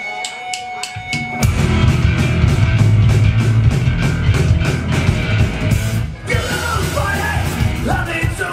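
Live rock band opening a song: a quick run of clicks from the drum kit over a held tone, then about a second and a half in the full band comes in loud with drums, electric guitar and bass, with a brief break about six seconds in.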